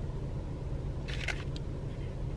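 Low steady rumble inside a parked car's cabin, the idling engine and heater running, with a brief rustle of the sandwich's paper wrapper being handled about a second in.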